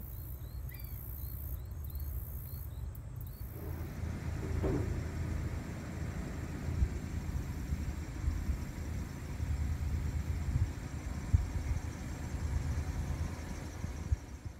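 Outdoor ambience of wind rumbling and buffeting on a phone's microphone, with a run of short, evenly spaced high chirps from a small bird or insect, about two a second, that stops about three seconds in.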